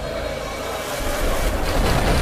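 Whooshing sound-effect swell with a deep bass rumble, growing louder toward the end, as in a logo animation's build-up before a hit.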